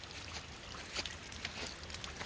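Faint outdoor background: a steady low rumble and hiss with a few light clicks.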